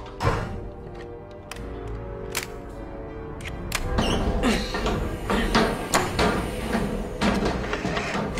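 Dramatic orchestral film score that swells about halfway through, with scattered sharp clicks and thunks of switches being thrown on a submarine's missile launch console.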